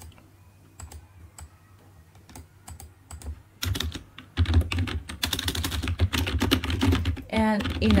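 Typing on a computer keyboard: a few scattered keystrokes at first, then a fast, steady run of keystrokes from about halfway through.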